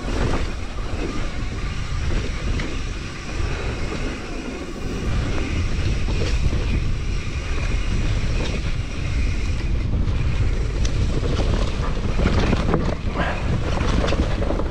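Wind buffeting the camera microphone over the rumble of a Nukeproof Mega enduro mountain bike's tyres rolling along a grassy dirt track. Scattered sharp clicks and rattles from the bike come in the last few seconds.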